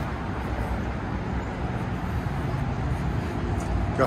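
Steady outdoor background rumble, mostly low in pitch, with no distinct events.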